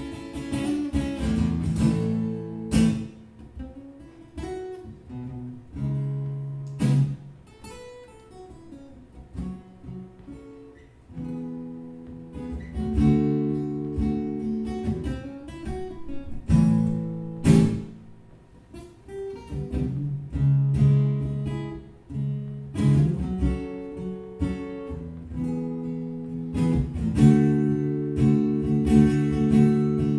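Gospel blues played on acoustic guitars, an instrumental passage of strummed chords and picked notes. It drops softer through the middle and builds up again near the end.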